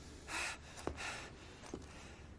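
A man's frightened, heavy breathing: one gasping breath about a third of a second in, with a couple of faint clicks.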